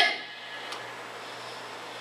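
Steady room tone in a pause of speech: an even background hiss with a faint low hum.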